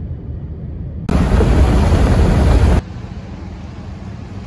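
Steady low road rumble of a car driving on a highway. About a second in, a loud rushing noise breaks in for under two seconds, then cuts off abruptly.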